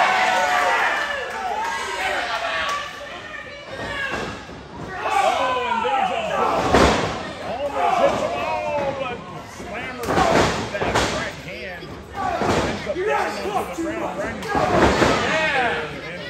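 Wrestlers hitting the boards of a wrestling ring: four heavy thuds in the second half, roughly every two to three seconds, under spectators calling out.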